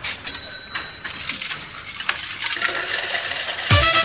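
Poker-machine sound effects: steady electronic beeping tones, then a busy jingling clatter like a payout. Near the end, the song's band comes in with a kick drum and melody.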